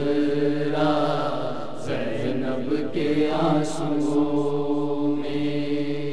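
Noha, an Urdu Shia lamentation, chanted in long, drawn-out held notes.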